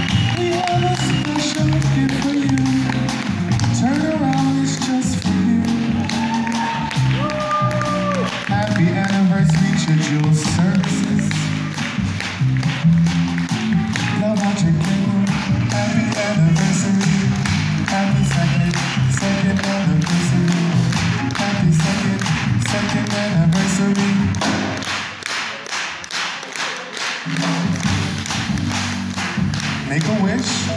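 A live jazz band plays: grand piano, upright double bass and a drum kit with steady cymbal taps, with a male singer's voice gliding over it. The low end thins out briefly near the end.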